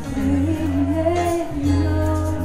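Live up-tempo song: a woman sings a wordless, wavering melodic line, improvising, over a band accompaniment with steady held bass notes that change about a second and a half in.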